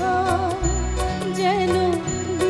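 A woman singing a Bengali song with a wavering, ornamented melody, accompanied by sustained harmonium chords and regular percussion strokes.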